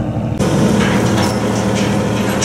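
An engine running steadily with a low, even hum; it becomes louder and noisier about half a second in.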